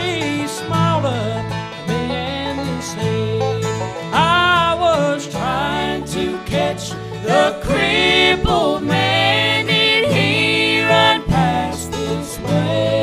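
Bluegrass gospel band playing: a man sings lead with vibrato over mandolin, banjo, acoustic guitar, fiddle and a steady walking electric bass line.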